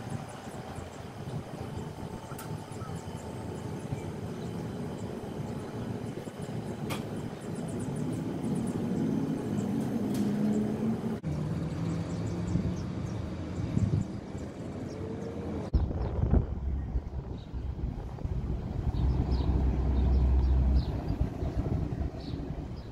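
City street traffic noise, a steady hum of passing vehicles, with a deeper low rumble rising in the last several seconds.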